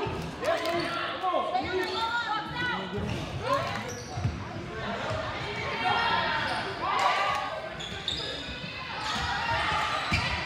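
Basketball game sound in a gym: a ball bouncing on the hardwood floor, with players' and spectators' voices calling out and shouting.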